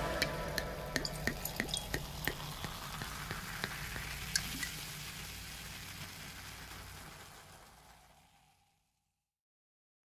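A faint crackling hiss with scattered small pops, fading away after the music ends and dying out about seven seconds in.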